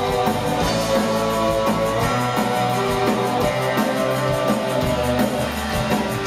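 Live gothic rock / post-punk band playing an instrumental passage: electric guitar and keyboard over a steady drum-kit beat.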